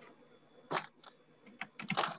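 Typing on a computer keyboard: scattered clicks over a faint background hum, with a quick run of keystrokes in the second second.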